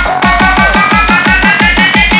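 Happy hardcore dance track: a fast run of kick drum hits, several a second, with a synth line rising steadily in pitch over them, a build-up with no vocals.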